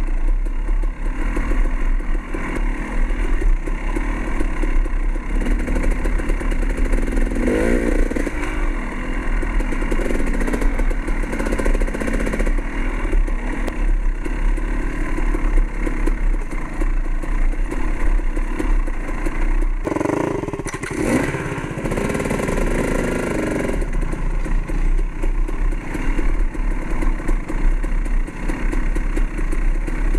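Dirt bike engine running under way on a rough woodland trail, its pitch rising and falling a couple of times with the throttle.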